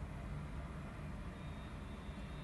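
Steady low hum and rumble with no distinct events, and a faint thin high tone in the second half.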